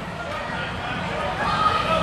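Background chatter of a crowd in a large hall: many voices talking at once, with no single sound standing out.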